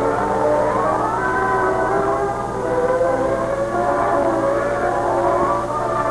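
Orchestral film score under opening titles: sustained strings whose melodies slide up and down. The sound is muffled, like an old 16mm optical soundtrack, with a steady low hum underneath.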